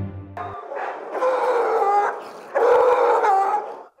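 Many shelter dogs barking and howling together in kennels, in two long stretches, the second louder. A short music sting ends about half a second in.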